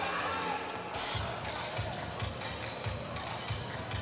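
A basketball being dribbled on a hardwood court: from about a second in, a low bounce roughly every third of a second, over the steady din of an arena crowd.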